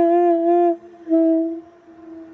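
Saxophone holding a long note with a slow vibrato that breaks off under a second in, then a shorter note at about the same pitch that fades away near the end.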